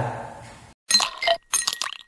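Glassy clinking sound effect in two short bursts about a second in, the sting of an end-card logo animation.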